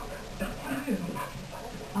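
A dog vocalising in a few short sounds in the first half, with faint voices behind.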